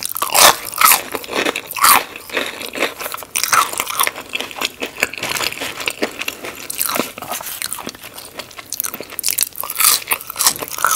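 Close-miked crunching bites into a battered, fried onion ring, then chewing. The loudest crunches come in the first two seconds, followed by quicker, softer crackles as it is chewed.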